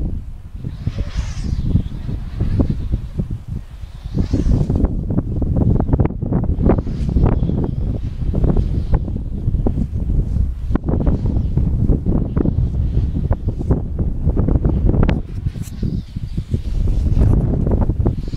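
Wind buffeting the camera's microphone: a loud, low, gusty noise that rises and falls throughout.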